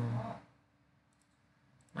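A man's voice trails off about half a second in, then a few faint computer mouse clicks in near silence.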